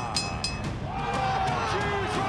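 A person's voice with drawn-out notes that glide in pitch, with a few short, bright ringing tones in the first half second.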